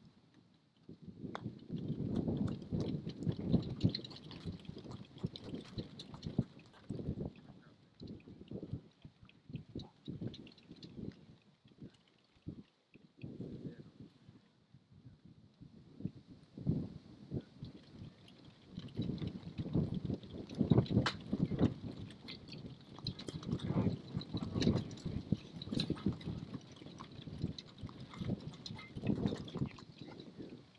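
Wind buffeting the microphone in irregular gusts: a low rumble that swells and drops, loudest in the second half, with a faint high buzz behind it.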